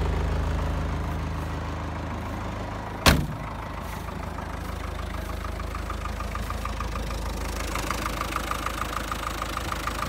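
Land Rover 2.25-litre three-bearing diesel engine idling steadily, at first as a low drone. A single sharp bang comes about three seconds in. Over the last few seconds the engine's regular diesel tick-tick clatter comes through more clearly.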